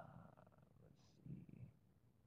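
Near silence: room tone on a recorded web-conference audio line, with a few faint, brief low noises and no speech.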